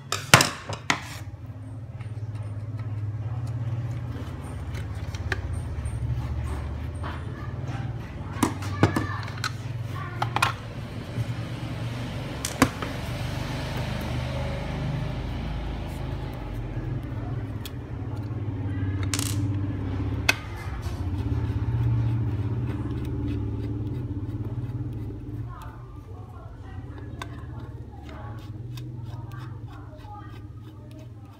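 A plastic security camera housing being handled and prised apart with a screwdriver: scattered sharp clicks and knocks of plastic and metal, over a steady low hum.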